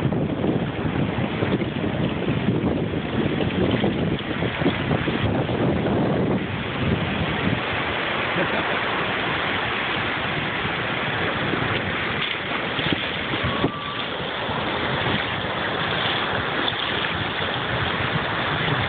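Ocean surf washing and breaking on the shore, with wind buffeting the phone's microphone, heaviest in the first six seconds.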